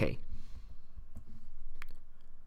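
Two sharp clicks of computer keyboard keys being typed, a little after a second in and again just before the end.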